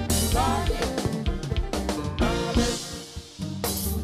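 Live kompa band playing: a drum kit and bass guitar drive the beat under electric guitars. A cymbal crash comes at the start and another near the end, after a brief dip in the beat.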